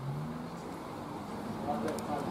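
Road traffic crossing the concrete road bridge overhead, heard from beneath the deck: a vehicle's engine note rising in pitch near the start over a steady traffic rumble.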